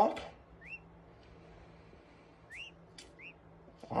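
Two-day-old peachick peeping: three short, faint peeps, each a quick upward-sliding note, one about two-thirds of a second in and two close together near the end.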